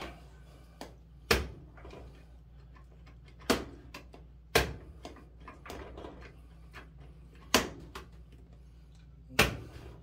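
Sharp clicks from a Maytag dryer's control knobs being turned and pressed while a replacement timer is tested: about five distinct clicks at uneven intervals over a faint steady low hum.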